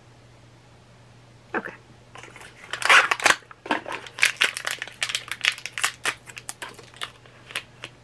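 Crinkling of mystery-pin blind-box packaging being opened by hand: a quick irregular run of crackles that starts about a second and a half in and is loudest about three seconds in.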